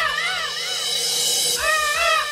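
Electronic DJ remix intro music: a high, wavering line of short notes that each rise and fall in pitch, repeating without a strong beat and thinning out briefly in the middle.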